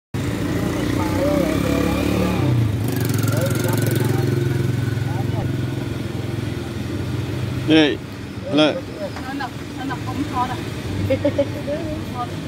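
A motorbike engine running steadily close by. Its pitch drops a couple of seconds in, and it fades after about eight seconds, with voices over it.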